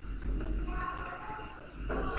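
A faint voice murmuring, much quieter than the lesson's speech, with a few light clicks.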